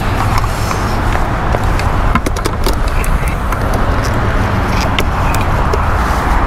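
Steady low outdoor rumble with several sharp clicks and taps from a medium-format camera lens being handled, bunched about two to three seconds in and again near the end.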